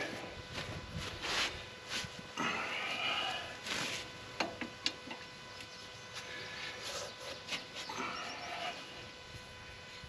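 A man grunting and straining as he works an adjustable wrench on the fill plug of a Kubota tractor's front axle, with two sharp metallic clicks of the wrench about halfway through.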